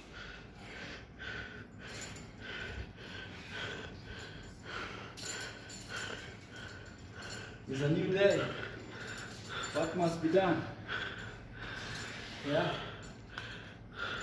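A man breathing hard after a heavy set of deadlifts: repeated heavy breaths, with three louder voiced breaths about 8, 10 and 12½ seconds in.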